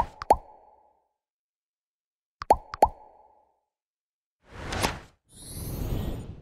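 Sound effects of an animated subscribe end screen: a pop right at the start, two quick pops about two and a half seconds in, then two whooshes near the end.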